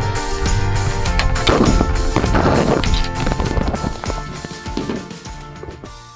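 Background music with a steady beat, fading out near the end.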